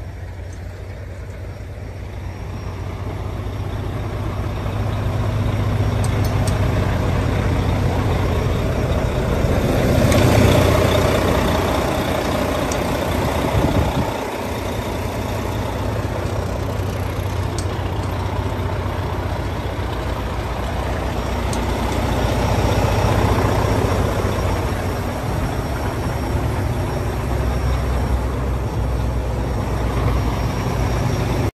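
Heavy semi-truck diesel engine idling with a steady low rumble, growing louder over the first ten seconds.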